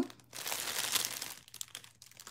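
Clear plastic packaging of a bag of foam craft balls crinkling as it is handled, starting just under half a second in and lasting about a second.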